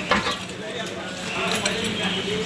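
A few light metallic clicks and taps from hands working at the underside of a Royal Enfield Bullet's engine while its oil drains, with faint voices in the background.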